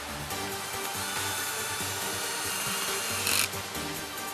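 Cordless drill running against a metal roof panel, with a steady whine that starts about a second in and cuts off suddenly with a short, loud burst. Background music plays underneath.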